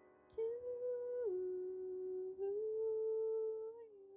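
A woman's voice singing a slow wordless line into a microphone: long held notes that step down, rise again and fall once more near the end.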